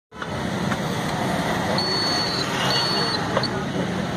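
Street traffic noise: vehicles running steadily with voices in the background. Two high, steady beeps, each about half a second long, come about two and three seconds in.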